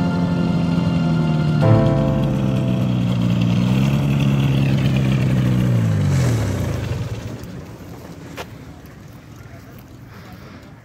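Paramotor trike engine and propeller running steadily, then cut about six seconds in, the pitch falling away as it spins down to a stop.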